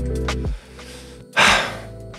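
Electronic background music with a steady beat cuts off about half a second in. A second later a man lets out one loud, breathy sigh close to the microphone.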